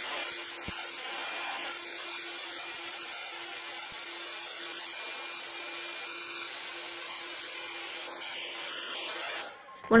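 BaByliss Big Hair hot air rotating brush running: a steady rush of blown air over a low motor hum as it is held in the hair, cutting off shortly before the end.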